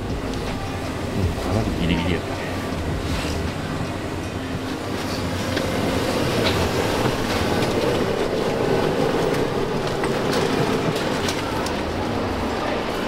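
Steady rumble of a coach bus, with people talking indistinctly; the noise grows a little louder about halfway through.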